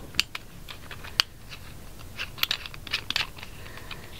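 Irregular small clicks and light scraping from an ASP baton's end cap being put back on by hand, with a sharp click about a second in and a few more clustered around three seconds.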